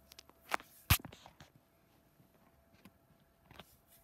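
Handling noise close to the microphone: a few light, sharp clicks and knocks, the loudest about a second in and a smaller one near the end.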